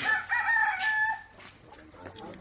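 Rooster crowing: one loud call lasting a little over a second.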